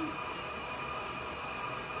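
Steady background hiss with a faint, even hum and no distinct event.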